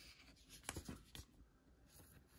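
Near silence with the faint scratching and light clicks of a trading card being handled, two small clicks a little under a second and just over a second in.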